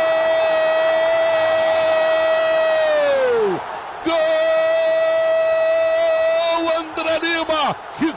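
Radio football commentator's drawn-out goal shout, 'Gooool!', held on one steady note that falls away about three and a half seconds in. A second long held 'gol' follows, then rapid shouting near the end, over stadium crowd noise.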